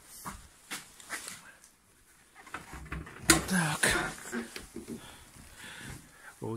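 Car bonnet being opened: a few light clicks and knocks, the sharpest a single click about three seconds in.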